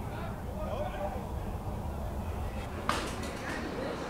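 Faint, low speech over a steady low outdoor rumble, with one sharp click about three seconds in.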